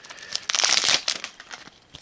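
Foil wrapper of a Magic: The Gathering booster pack crinkling as it is torn open by hand, loudest about half a second to a second in.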